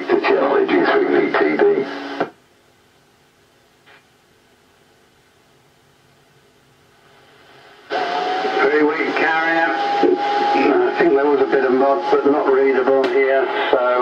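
Amateur-band AM voice transmissions heard through the loudspeaker of a homebrew octal-valve superhet communications receiver. One station's speech ends about two seconds in, leaving several seconds of faint background noise, then another station comes on and talks, with a steady tone under its first words.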